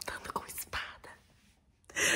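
A woman whispering in short breathy bursts, falling quiet for about the last second.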